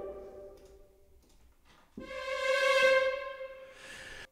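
Sampled string ensemble played from a keyboard. A held note dies away within the first second, and after a short gap a second, higher held note swells and fades.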